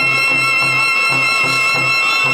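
A cobla, the Catalan sardana band of double reeds, brass and double bass, playing a sardana. A long held high melody note sounds over a steady oom-pah accompaniment of alternating bass notes and off-beat chords.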